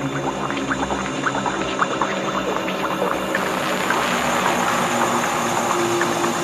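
Beatless intro of a psytrance track: a sustained synth drone under scattered short chirping electronic blips, with a rising noise sweep building over the last couple of seconds.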